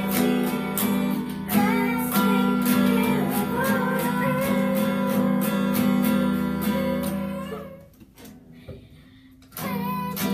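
Two acoustic guitars strummed in a steady rhythm while children sing. The music fades out about eight seconds in, leaving a pause of about a second and a half before the strumming starts again near the end.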